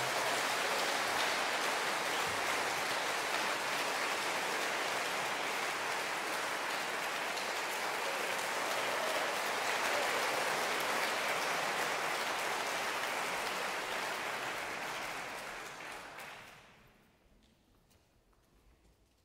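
Concert hall audience applauding at the end of a song, a steady clapping that dies away about fifteen seconds in.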